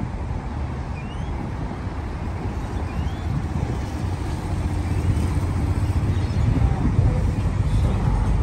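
Heavy road traffic: a steady stream of cars and trucks driving past close by, a low rumble that grows a little louder in the second half.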